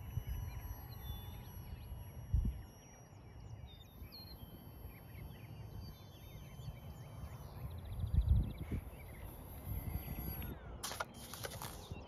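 Wind rumbling over the microphone, with two stronger gusts about two seconds in and about eight seconds in, while small birds chirp in the background.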